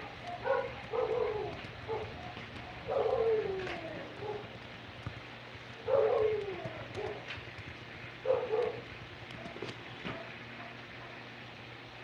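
A dog barking in four short bouts, each call falling in pitch, over a faint steady hum.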